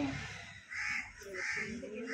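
A crow cawing: two harsh caws, about a second in and again half a second later, with faint voices underneath.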